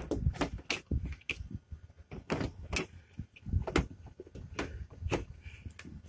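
Irregular light knocks and clicks with soft thumps, a few each second: handling noise from a hand working close to the camera on the van roof.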